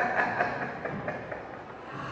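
Laughter that breaks out suddenly, loudest at the start and coming in a few short pulses that fade over about a second and a half.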